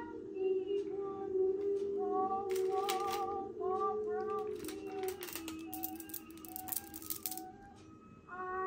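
Background music: a held chord under a soft, wavering melody. Between about two and seven seconds in, a run of light clicks and clinks from jewelry being handled.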